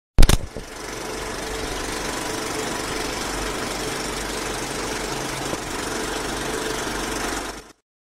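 Old film projector sound effect: a sharp click at the start, then the projector running steadily, fading out shortly before the end.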